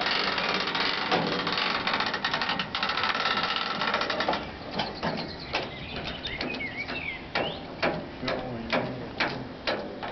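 Car trailer's hand winch being cranked to haul a car up onto the bed, its ratchet clicking. The clicks run fast and dense for the first few seconds, then settle to about two clicks a second.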